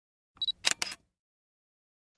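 Intro sound effect for a logo animation: a short high beep followed at once by two quick sharp clicks, together under half a second.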